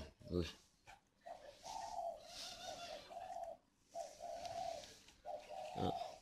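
Caged doves cooing faintly in a run of low, drawn-out coos with a few short breaks.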